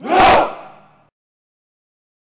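A unit of soldiers shouting their reply to a commander's greeting in unison: one loud group shout lasting about a second that stops suddenly.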